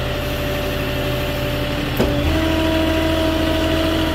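Moffett truck-mounted forklift's engine running steadily while the operator sets down a load of lumber. About two seconds in there is a click, after which a higher, steady tone joins the engine note.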